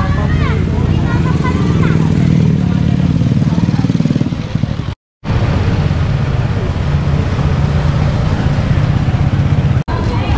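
Small motorcycle engines running as a scooter and then a motorcycle-sidecar tricycle pass along the street. The sound cuts out for a moment about halfway through.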